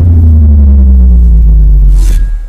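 Deep cinematic bass boom of a logo-intro sting: a loud, low rumble that slowly sinks in pitch as it sustains.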